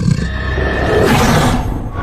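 Horror film soundtrack: dark, ominous music with a harsh, animal-like creature cry rising over it for about a second in the middle.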